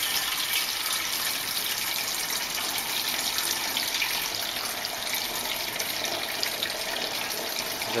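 Brownish liquid poured in a steady stream from an aluminium pot onto a cloth filter, splashing and trickling evenly as it is filtered.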